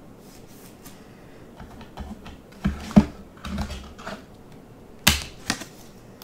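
Trading cards being handled and slipped into a plastic holder: scattered light clicks and taps of card stock and plastic, the sharpest about three seconds in and again about five seconds in.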